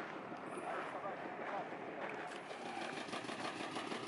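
Faint, distant voices talking over a steady outdoor background hiss.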